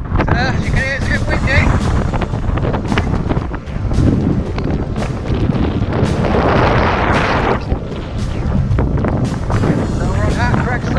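Wind buffeting the camera microphone on an exposed summit: a loud, continuous low rumble, with a stronger hissing gust a little past the middle.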